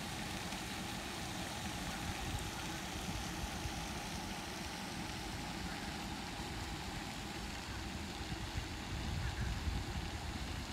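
Steady hiss of a pond's spray fountain, with wind rumbling on the microphone, stronger near the end.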